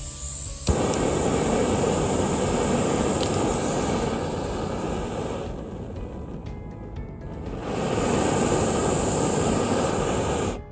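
BRS 3000T titanium canister stove being lit with a lighter: a click about a second in, then the gas flame burns with a steady rushing hiss. The flame is turned down around the middle and back up about two seconds later.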